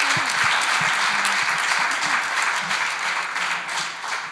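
Audience applauding, dying away toward the end.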